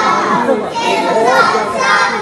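A group of young children's voices overlapping and calling out together.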